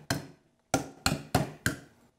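A small sledgehammer striking the top of a block of clear ice, four sharp knocks in quick succession in the second half, chipping through the frozen shell to let out the water still trapped inside.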